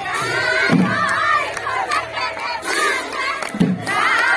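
A group of women singing and calling out together in a Bihu chorus, many voices at once, with two low thumps, about a second in and near the end.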